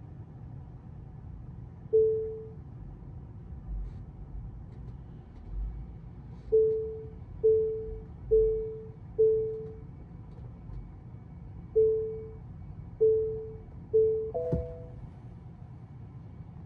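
Tesla park-assist warning chimes: clear single beeps that ring out briefly, one about two seconds in, four about a second apart in the middle, then three more. They end with a two-note chime and a sharp click near the end. They warn of an obstacle close behind the car, close enough for the screen to say STOP.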